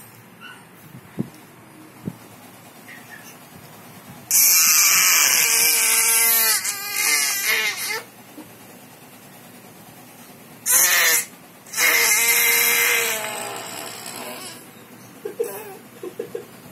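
Baby girl screaming in anger: two long, loud, high-pitched screams, the first starting about four seconds in, the second starting with a short burst about eleven seconds in and tailing off.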